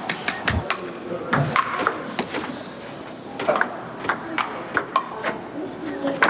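Table tennis rally: the ball clicking back and forth off paddles and the table in a quick, irregular run of sharp ticks.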